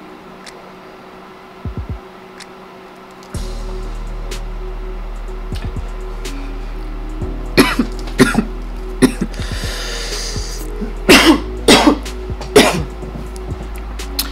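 A woman coughing in several short fits, starting about halfway through, after inhaling smoke. Background music with a steady low bass comes in a few seconds in.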